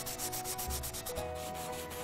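Soft chalk pastel stick rubbing across drawing paper in quick, scratchy back-and-forth strokes, laying white into a pastel sand area.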